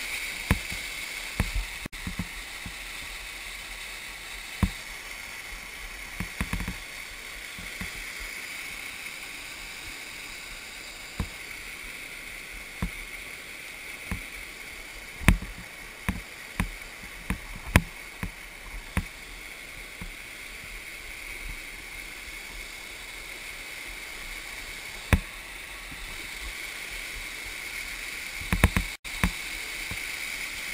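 Waterfall water rushing steadily close to the camera, broken by many irregular sharp knocks and taps, the strongest about fifteen seconds in.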